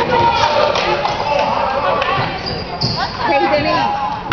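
A basketball bouncing on a hardwood gym floor during play, mixed with spectators' voices talking and calling out.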